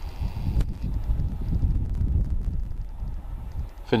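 Gusty wind rumbling on the camera microphone, rising and falling irregularly, with a faint click about half a second in.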